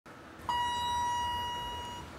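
Elevator arrival chime: a single electronic ding about half a second in that rings on and slowly fades, signalling that the car has arrived and its doors are about to open.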